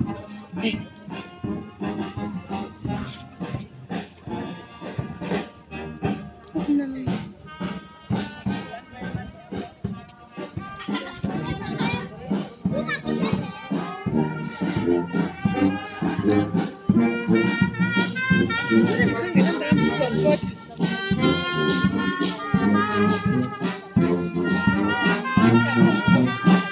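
Brass band with tubas and trumpets playing while marching, over a steady beat, growing louder as it approaches.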